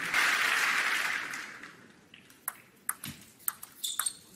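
Arena crowd applauding after a point, dying away over about two seconds. Then sharp, separate clicks of a table tennis ball striking the table and the bats as the next point begins.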